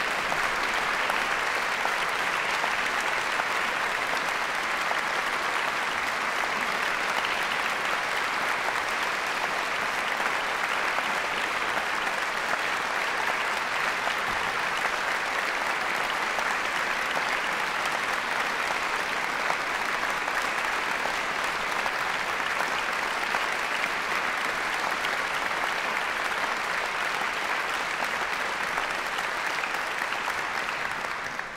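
Concert audience applauding steadily: dense, even clapping with no break.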